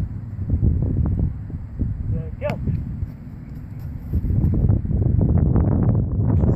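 Wind buffeting the microphone outdoors: a low rumble that rises and falls and swells toward the end. A short rising whistle-like sound breaks through about halfway in.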